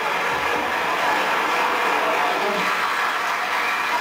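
Large audience applauding, a steady, even clapping.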